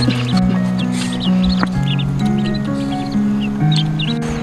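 Background music of sustained, slowly changing notes, with a brood of downy poultry chicks peeping in clusters of short, high calls over it.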